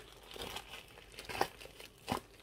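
Quiet rustling and crinkling of a padded envelope and paper being opened and handled, with a sharper crackle about one and a half seconds in.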